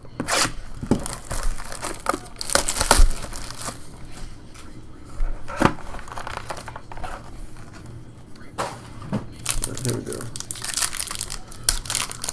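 A 2015 Topps High Tek football hobby box being opened and its foil-wrapped card pack handled and torn open: irregular rustling, scraping and crinkling of cardboard and foil, with tearing toward the end.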